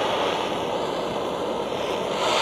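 Butane jet torch lighter flame hissing steadily, held against an aluminium can and burning a hole through its wall.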